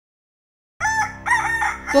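A rooster crowing once, about a second in: a single cock-a-doodle-doo in two joined parts.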